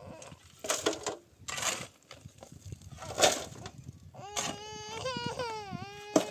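A toddler crying and whining in a high, wavering voice that starts about four seconds in. Before it come a few short scraping knocks from rubble being worked, the loudest about three seconds in.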